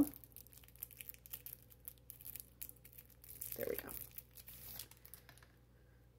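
Clear plastic wrapper crinkling and tearing as it is peeled off a marker by hand. It makes a run of small crackles that thins out toward the end.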